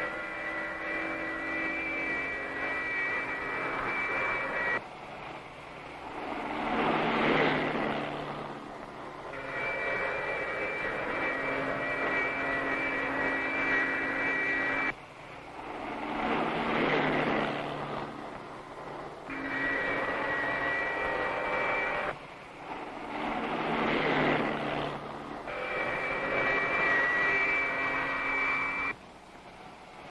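Film sound effect of flight, like a jet aircraft: a steady, high, whining drone alternates with swelling whooshing rushes. Each section breaks off abruptly and the pattern repeats every four to five seconds.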